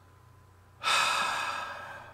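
A man's sigh, a loud breathy exhale close to the microphone that starts suddenly about a second in and trails off over about a second.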